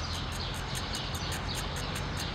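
Insect chirping steadily in short high-pitched pulses, about five a second, over a low outdoor background rumble.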